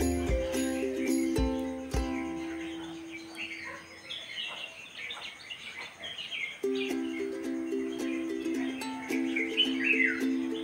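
Background music: a light plucked-string tune that fades out a few seconds in and comes back suddenly about two-thirds of the way through, with bird-like chirps throughout.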